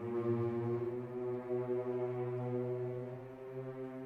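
Symphony orchestra holding one long, steady low chord, growing a little softer near the end.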